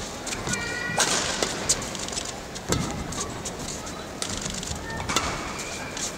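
Badminton rally: sharp racket hits on the shuttlecock a second or two apart, with short high squeaks of shoes on the court floor, over the steady noise of the arena.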